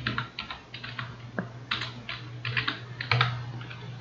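Typing on a computer keyboard: an irregular run of about a dozen key clicks over a steady low hum.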